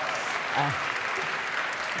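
A large audience applauding steadily, with a short spoken "uh" over it.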